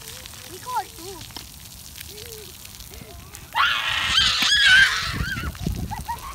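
Children's voices calling, then a loud, high-pitched shriek about three and a half seconds in that lasts a second or so.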